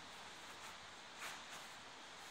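Quiet, steady room hiss with a few faint, brief rustles of gi fabric as the grapplers shift on the mat, the clearest a little over a second in.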